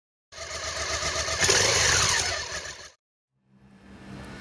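A motorcycle engine sound, likely an intro sound effect, that swells to a peak about one and a half seconds in and then fades out before the three-second mark.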